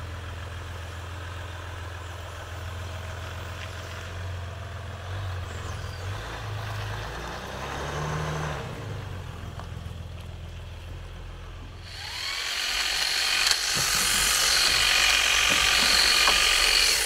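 Jeep Gladiator's 3.0-litre V6 diesel engine running low as the pickup creeps along, rising briefly about eight seconds in. About twelve seconds in it gives way to a cordless battery hedge trimmer running, a louder high-pitched whir.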